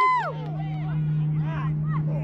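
A high, held shout from a spectator trails off just after the start. Then comes faint scattered shouting and chatter from the sideline and field over a steady low hum.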